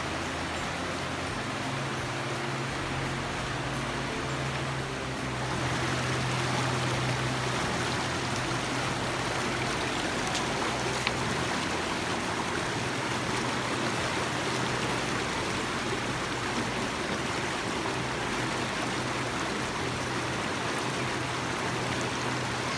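Steady rush of the Soča River, a fast clear mountain river running over rocks and small rapids, getting louder about five seconds in. A low steady hum sits under the water for the first half.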